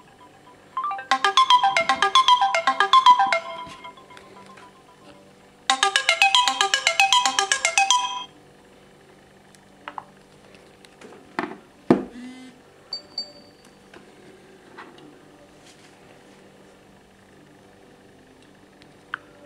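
Samsung Galaxy S4 mini's alarm melody, an electronic tune played in two bursts of about two and a half seconds each, a couple of seconds apart, then stopping. Afterwards come light handling clicks and a knock as the phone's flip cover is opened, and a short high beep.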